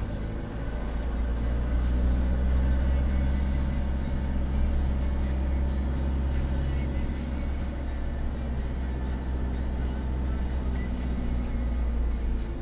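Car engine and cabin drone heard from inside the car at low speed, getting louder about a second in as the car speeds up from a crawl, then holding steady.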